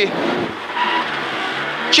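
Renault Clio N3 rally car's four-cylinder engine running at low revs as the car rolls slowly, heard from inside the cabin as a steady hiss with a faint low engine note that rises slightly in the second half.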